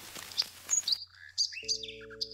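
Several short, high bird chirps in quick succession in the second half, after a background hiss with faint clicks cuts off about a second in. A steady held tone joins near the end.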